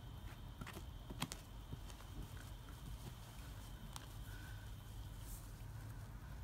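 Gloved fingers faintly scraping and digging in loose soil and straw, with a few sharp little clicks as clods and bits are moved.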